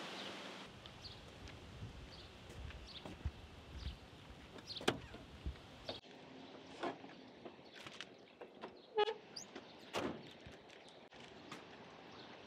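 Faint scattered clicks and knocks over a quiet outdoor background, from a patrol car's door and interior being handled.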